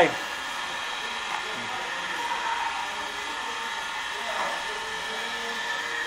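A steady mechanical whir with several held tones, like a small electric motor running, with faint voices in the background.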